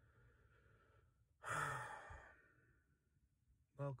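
A man's loud sigh: one breathy exhale about a second and a half in that fades away over about a second.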